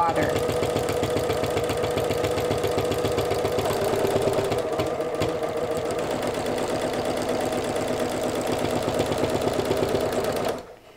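Electric sewing machine stitching quilting lines through layered fabric, running steadily with a rapid, even rhythm of needle strokes over a motor whine.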